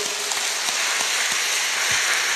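A large church congregation applauding: steady, dense clapping.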